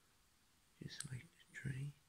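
Soft, half-whispered speech: two short words or syllables about a second in, over quiet room tone.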